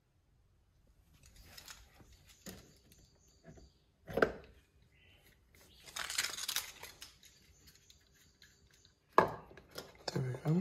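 Faint handling and shuffling noises, with a single louder thump about four seconds in, a stretch of rustling after six seconds and a sharp click shortly before the end, as the electric car's charge port and charging connector are handled.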